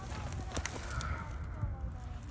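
Rustling through dry grass and weeds, with a few light crackling clicks about half a second in.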